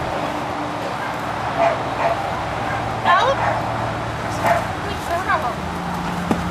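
A dog gives about four short, high yips and whines, spaced a second or so apart, over a steady low hum.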